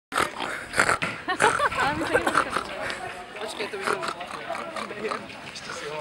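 Voices of several young people talking over one another, with a few short noisy bursts in the first second.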